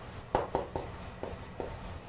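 Chalk writing on a blackboard: a string of five or six short, sharp chalk strokes and taps as a word is written out.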